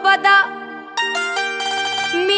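Qawwali music: a woman's sung phrase ends about half a second in. A bulbul tarang (keyed Indian banjo) then plays a short run of bright, stepped notes over a steady drone.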